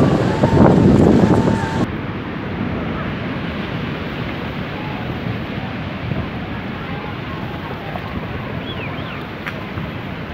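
Steady rushing of sea surf and flowing floodwater, with wind on the microphone. Voices call out over it for about the first two seconds.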